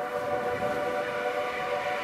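A held chord of several steady tones, horn-like, sustained evenly at the opening of the track.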